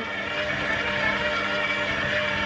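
KitchenAid stand mixer running at a steady speed with its dough hook turning: a constant motor hum holding several fixed tones.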